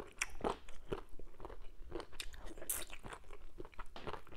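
A person chewing a mouthful of bitter leaf and spinach soup with fufu, close to a lapel microphone: irregular wet mouth clicks and smacks, several a second.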